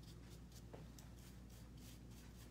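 Faint scratching of a paintbrush dabbing gold wax onto a plaster picture frame, a series of light short strokes.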